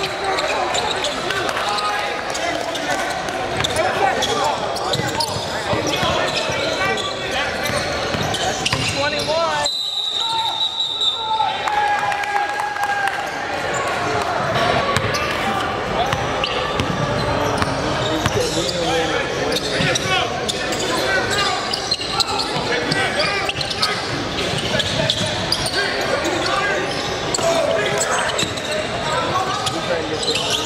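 Basketball game in a large gym: the ball bouncing on the hardwood floor and players and spectators calling out, all echoing in the hall.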